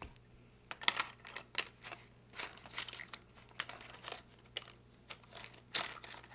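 Irregular scratching, rustling and light knocks right at the phone's microphone, about a dozen short bursts, as the phone is handled and slid against the drawing paper.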